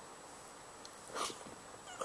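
Faint room tone, with one short breathy exhale about a second in as a yawn ends.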